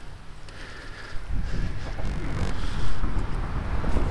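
Wind buffeting the microphone outdoors, a low rumble that picks up about a second in.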